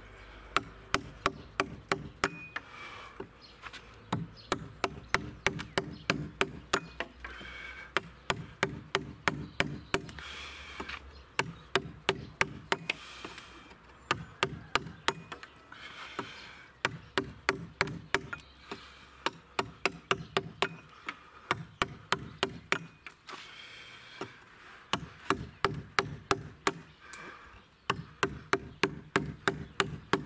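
A light wooden mallet striking the wooden handle of a Stryi carving gouge, driving the blade into a timber beam: quick, even blows about three a second, in runs of several seconds with short pauses between.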